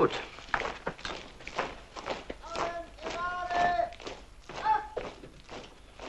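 Footsteps and knocks on a hard floor, a string of short separate steps, with brief pitched vocal sounds in the middle.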